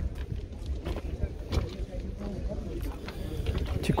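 Low wind rumble on the microphone, with faint voices of people talking in the background and a few soft clicks.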